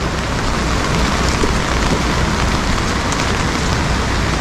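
Steady hiss of rain falling on wet pavement, with no distinct events standing out.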